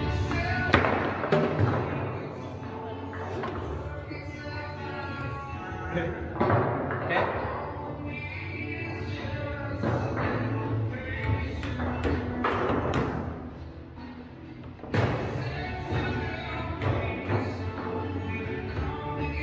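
Foosball play: sharp knocks and thumps of the ball being struck by the rod figures and hitting the table walls, with rods banging, scattered irregularly and loudest about a second in and near 15 seconds. Background music plays underneath.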